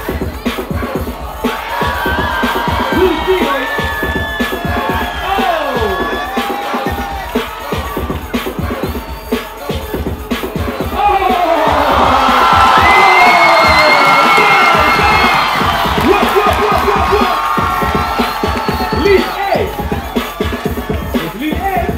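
A crowd cheering and shouting over music with a steady beat. The cheering swells loudest around the middle, then falls back.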